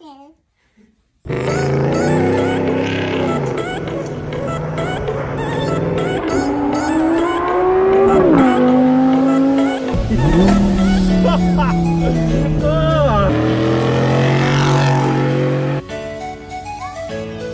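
Audi R8's V10 engine accelerating hard, its note climbing and then dropping at each upshift several times over.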